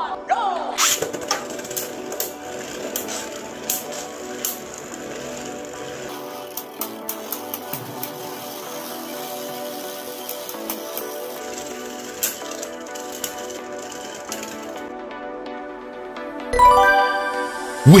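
Background music over Beyblade tops spinning in a plastic stadium, knocking and clicking against each other in sharp hits, many in the first few seconds and scattered after. A louder burst comes near the end.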